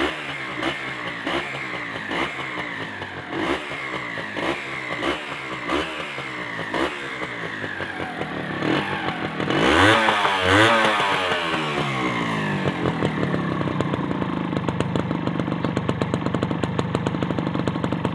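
Honda H100S CDI motorcycle's small single-cylinder four-stroke engine running and being revved: short quick throttle blips about one and a half a second, then a longer, louder rev about ten seconds in. It then settles to a steady idle.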